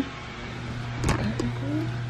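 A steady low hum, with a soft knock and rustle of the camera being handled about a second in.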